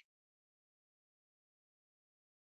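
Near silence: the audio is dead quiet, as if gated, with no sound at all.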